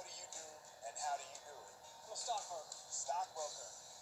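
Film trailer audio, a man's speech over music, played through a portable DVD player's small built-in speaker, so it sounds thin and tinny with almost no bass.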